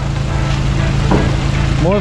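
A low, steady engine hum running throughout, with a brief rush of noise just past a second in.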